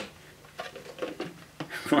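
Dyson Cinetic Big Ball's clear plastic dust bin being handled: a sharp click at the start, then a few faint taps and rattles as the bin door will not latch shut again.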